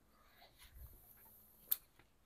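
Quiet footsteps through dry brush and fallen branches, with one sharp snap near the end.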